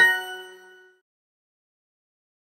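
Duolingo app's correct-answer chime, a bright ding of several ringing tones that fades away within about a second, signalling an accepted answer.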